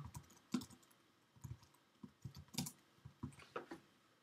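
Typing on a computer keyboard: a faint, irregular run of keystrokes as a line of code is entered.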